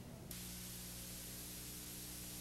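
Faint steady hiss with an electrical hum, starting abruptly a moment in as the feed switches from the studio to the racetrack footage: background noise of an old videotaped broadcast feed.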